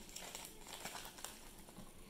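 Faint crinkling of a clear plastic bag and light handling of Wikki Stix picked up off a wooden table, with a few soft clicks.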